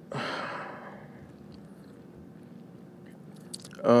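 A man's short breathy exhale into a close microphone that fades within about a second. The room then goes quiet until a drawn-out "um" near the end.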